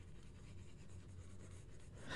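Faint room tone with a low hum and light, fine scratching, as of a pointing device being dragged while a brush stroke is painted.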